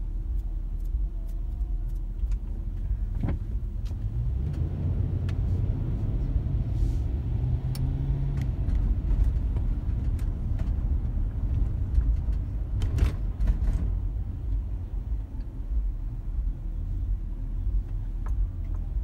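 A car's engine and road rumble heard from inside the cabin as the car pulls away from a traffic light and slows again in traffic. A few sharp clicks break through, about three seconds in and again near thirteen seconds.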